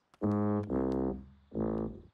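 Tuba playing three low, sustained notes, the first two joined and the third after a short break.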